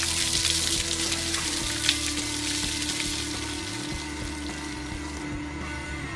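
A bucket of ice water poured over a person's head, water splashing down over him and onto the floor, ending abruptly about five seconds in.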